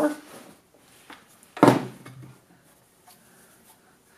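Hardware being handled on a tabletop: a faint click about a second in, then a single sharp knock as the power adapter is set down.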